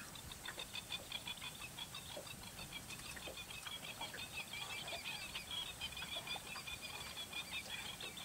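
Birds chirping in a dense, rapid chatter of short high calls that runs on without a break, with a few lower calls and clicks mixed in.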